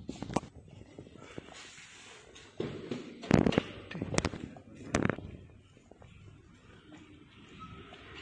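A few sharp clicks and knocks, the loudest about three and a half seconds in, with some dull thuds around it, over low background noise.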